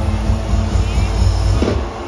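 Live concert music from a large festival sound system, heard from within the crowd and dominated by a heavy, booming bass. Near the end the bass drops away as the next section begins.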